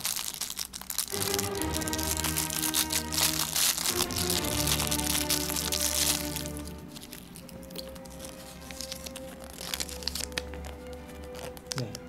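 Thin clear plastic toy wrapper crinkling as it is handled and pulled open, over background music; the crinkling is densest in the first six or seven seconds and then thins out, leaving mostly the music.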